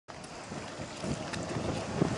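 Wind buffeting the microphone over the low drone of motorboats on the water, growing louder about a second in.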